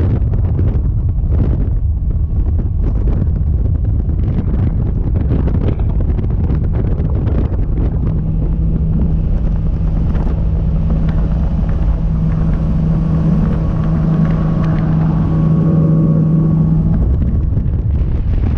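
Nitro Z20 bass boat's outboard motor running under way, with heavy wind buffeting on the microphone. About eight seconds in, a steady engine hum rises out of the rumble and holds until near the end.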